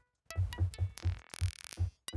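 A synthesized click from Ableton's Operator fed into Ableton's Delay in ping-pong mode with feedback: a train of short pitched echoes, about five a second, each with a low thud and a ringing tone above. A burst of high hiss comes in about 1.3 s in and stops about half a second later.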